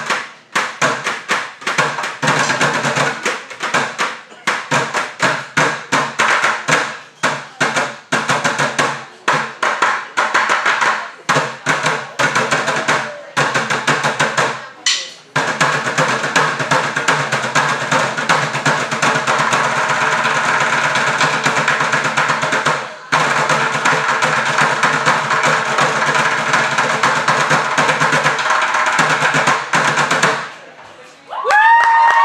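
Three drummers beating upturned plastic buckets with drumsticks in fast, tightly rhythmic patterns. About halfway through, the hits run together into a near-continuous roll, broken by a brief pause and then another short pause later on.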